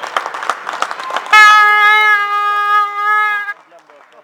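Arena horn blowing one loud, steady blast of a little over two seconds, starting about a second in and cutting off sharply, signalling the end of the period. Before it, quick clacks of floorball sticks and ball on the hall floor.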